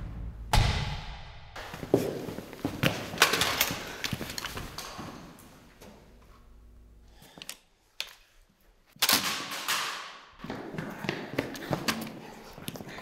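A series of heavy bangs and thuds, each dying away with a ringing tail, then a brief lull before another loud bang and a quick run of sharper knocks and clicks.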